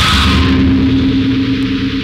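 Harsh noise music: a loud, dense wall of distorted noise over a steady low drone.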